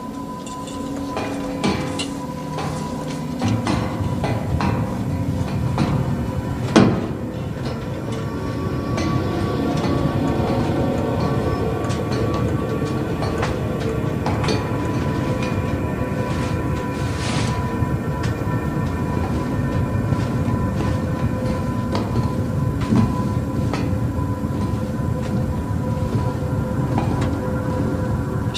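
Suspenseful film underscore over a steady low rumbling drone, with one sharp hit about seven seconds in.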